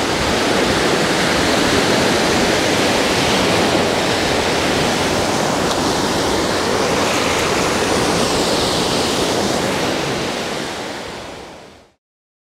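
Small waves breaking and washing up a sandy beach, a steady rush of surf that fades out near the end.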